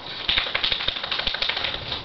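A quick, dense run of rattling clicks lasting about a second and a half, made by a pug moving close to the microphone.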